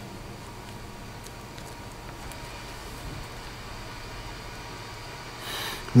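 Quiet room tone: a steady low hum with a few faint light ticks, and a short hiss near the end.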